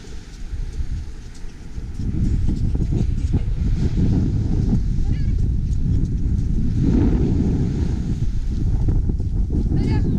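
Wind noise on the microphone of a camera carried at a run across a beach, louder from about two seconds in, with faint high wavering calls now and then.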